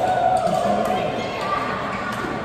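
Badminton rackets striking the shuttlecock in a doubles rally: a few sharp hits, the first right at the start, echoing in a large hall.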